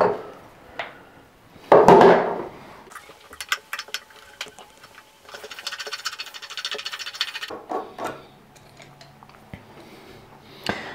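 Small metal clicks and scrapes as a screwdriver works the screw out of a chrome bathroom tap's head so the head can come off. The clicks thicken into a rapid rattle for about two seconds midway. There is a short louder noise about two seconds in.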